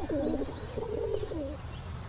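Pigeons cooing: a few coos, one after another.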